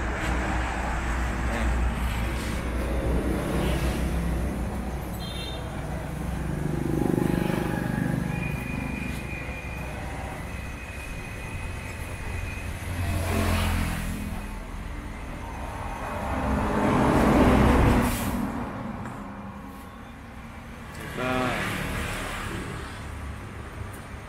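Steady low rumble of road traffic, with vehicles swelling past twice, near the middle and about three-quarters of the way through.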